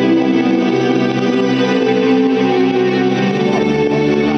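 Live rock band playing, led by electric guitar with effects on sustained notes; the chord changes about three seconds in.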